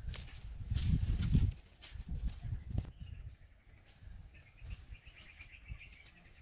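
Footsteps and rustling in dry forest undergrowth, loudest in the first second and a half, then softer scattered knocks. A faint, rapid chirping call runs through the second half.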